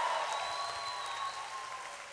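A church congregation applauding, dying away steadily.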